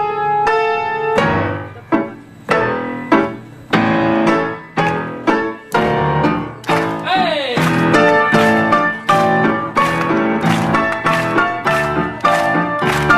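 Solo grand piano playing: struck chords and notes that ring and die away, coming faster and denser in the second half, with a brief sliding tone that falls in pitch about seven seconds in.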